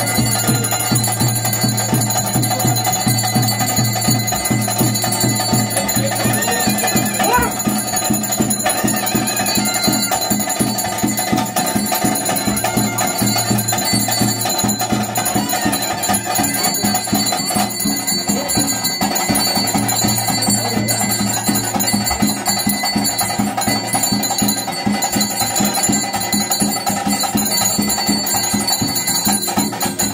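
Traditional Tulu Nadu ritual music for a Daiva kola: a reed pipe plays over fast, steady drumming while bells ring continuously, loud and unbroken.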